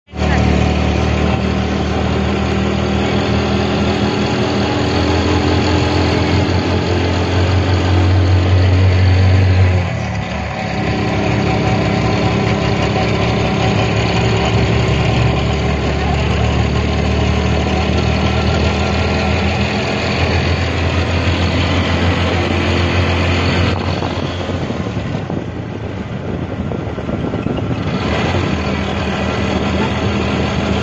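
Engine of a small open vehicle running steadily under way, heard from aboard along with road and wind noise. The engine note changes and drops about ten seconds in, and the sound eases for a few seconds near the end.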